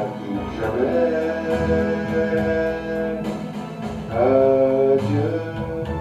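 A man singing a slow French love song into a handheld microphone over a backing track with guitar and strings, holding two long notes.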